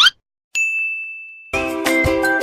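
A quick rising swoosh, then a single bright ding that rings and fades over about a second; music starts near the end.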